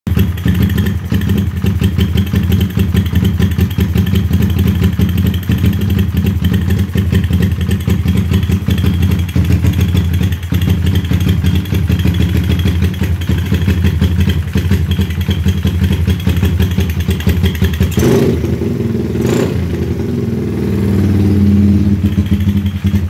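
A Suzuki motorcycle engine running steadily through an aftermarket exhaust, freshly brought back to life after a rebuild. Near the end the note changes and rises briefly, as with a blip of the throttle.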